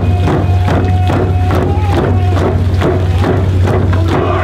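Hand-held frame drums beaten together in a fast, steady beat while a voice or voices hold a long sung note, the pitch lifting slightly midway.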